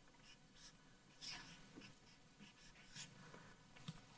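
Faint marker strokes on an easel chart as the equation "5+0=5" is written, a few short scratchy strokes with the loudest about a second in.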